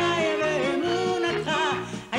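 A woman singing a song into a microphone with band accompaniment and a steady bass beat; her voice slides between long held notes.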